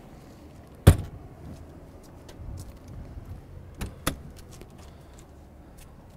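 A motorhome's exterior storage bay door shut with one sharp latch click about a second in, then two lighter clicks near four seconds as the next compartment's latch is opened.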